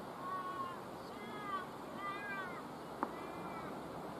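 A bird calling: a run of four short, high, arched calls with a steady outdoor background, and a single sharp tap about three seconds in.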